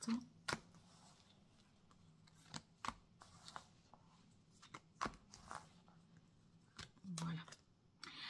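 Tarot cards being drawn and laid out on a table one after another: several sharp card snaps as each is set down, with soft sliding and rustling of cards between.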